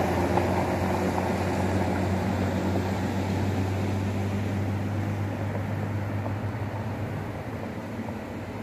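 A steady low mechanical hum, like an engine or large machine running, over a broad rushing noise, slowly growing fainter.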